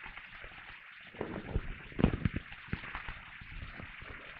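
A few light knocks and taps as a long-handled candle snuffer is handled to put out a candle, over a steady hiss.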